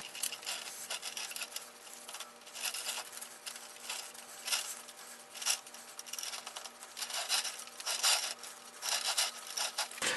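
Paintbrush bristles stroking dye onto a veneered MDF disc: faint, irregular swishing strokes.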